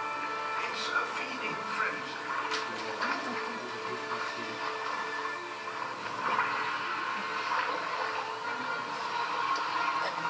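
Music from a nature documentary soundtrack, played through the room's speakers, with a voice heard at times.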